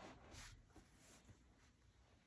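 Near silence: room tone, with a faint brief rustle in the first half second.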